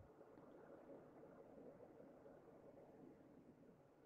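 Near silence: faint cab room tone in a pause between speech.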